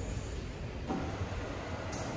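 A steady low rumble under a faint even hiss, with one short soft knock about a second in.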